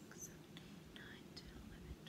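Near silence with a woman whispering faintly, counting cross-stitches under her breath.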